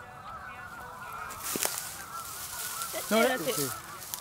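Faint honking bird calls, goose-like, with a louder call falling in pitch about three seconds in.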